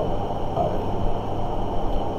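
Steady low background noise, a constant even rumble and hiss with a faint hum, with one short spoken word about half a second in.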